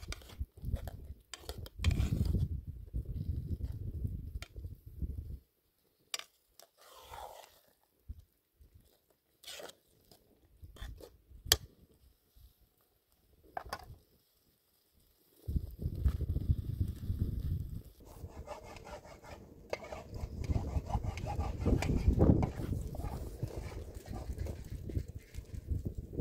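A metal spoon clinking and scraping in a cooking pot, heard as short sharp clicks, between two long stretches of low rumbling noise that are the loudest sound.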